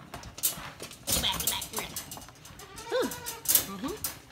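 Nubian goat kid bleating twice, a short rising-and-falling call about three seconds in and a brief rising one near the end, among sharp knocks and rattles, the loudest just after the first bleat.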